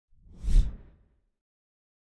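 A single whoosh sound effect with a deep low end, swelling to a peak about half a second in and dying away before one second.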